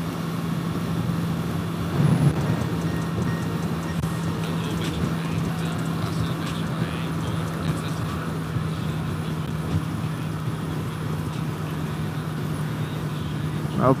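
A motorcycle engine droning steadily at road speed under a constant rush of wind, picked up by a helmet-mounted microphone. Music from the rider's helmet headset plays faintly underneath.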